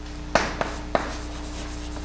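Chalk writing on a blackboard: three quick strokes within the first second, the first the loudest, over a steady low hum.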